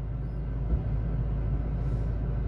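Steady low vehicle rumble heard inside a car cabin, with one brief low bump about three quarters of a second in.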